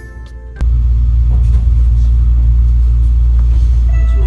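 Kintetsu 80000 series Hinotori limited express running, heard from inside the carriage: a loud, steady low rumble that starts abruptly about half a second in, as background music cuts off.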